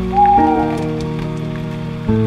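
Lo-fi piano music: sustained, soft chords that change about half a second in, with a short sliding tone near the start. A patter of small crackles runs behind the music like rain.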